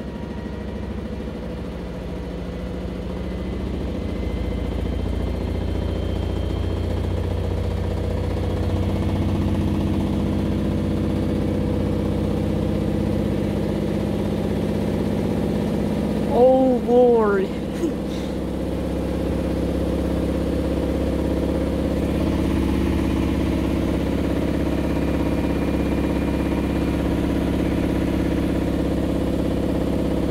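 Maytag Bravos XL top-load washing machine in its high-speed spin: a steady motor-and-drum hum with several held tones that grows louder over the first several seconds as the drum winds up to about a thousand RPM, its top speed, then holds level. A brief sound with wavering, arching pitch cuts in about halfway through.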